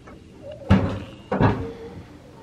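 Two sharp knocks, the first about two-thirds of a second in and the second about half a second later, each ringing out briefly.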